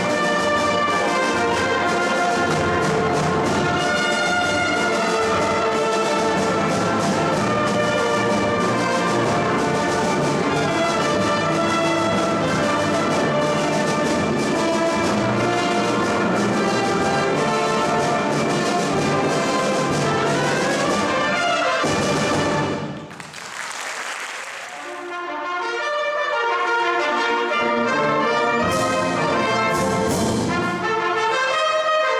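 Concert band of wind and brass instruments playing a full, sustained passage, brass to the fore. A little over twenty seconds in, the music breaks off into a brief noisy swell and a lull, then picks up again more thinly.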